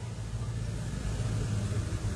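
Steady low background rumble with a faint hum, in a pause between spoken sentences.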